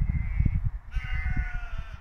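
Sheep bleating: one call trails off at the start and a longer, slightly falling bleat follows about a second in, over a low rumble of noise on the microphone.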